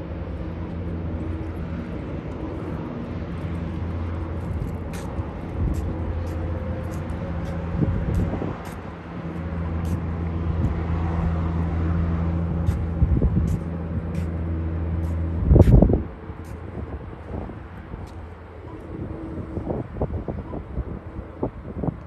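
Steady low engine drone that holds level without rising, then a brief loud thump about three quarters of the way in, after which the drone fades away.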